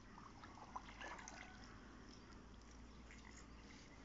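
Faint water sounds near silence: a short run of small splashes and drips about a second in, then only a few scattered ones over a low hum.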